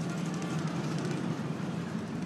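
Steady outdoor background noise of a city street: an even rumble with no distinct events.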